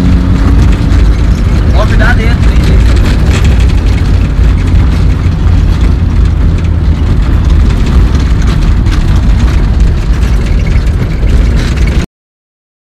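Rally car running: a loud, steady low rumble of engine and road noise, with a brief voice about two seconds in.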